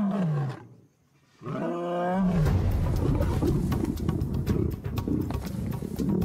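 A male lion roars twice, each call falling in pitch and lasting under a second, with a brief silence between them. From about two seconds in, a dense noisy scuffle of lions fighting takes over, with music under it.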